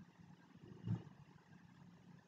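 Near silence: faint room tone with one brief soft sound about a second in.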